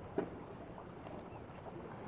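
A steady outdoor hiss of wind and running water, with one sharp knock near the start and a couple of faint ticks about halfway through.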